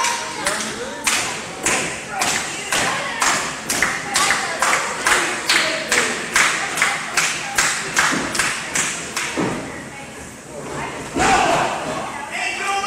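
A steady rhythm of sharp thuds, about two a second and quickening slightly, stops about nine seconds in. A louder burst of noise follows near the end.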